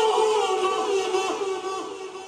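Male voice reciting a naat unaccompanied, holding a long sung note that slowly falls in pitch and fades away near the end.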